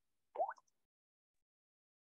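A single short rising blip, about a fifth of a second long, a third of a second in; otherwise near silence on the call audio.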